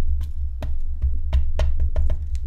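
A mini ink pad tapped repeatedly onto a rubber stamp on an acrylic stamping block, inking the stamp. The taps come at about four a second, each a short, dull knock.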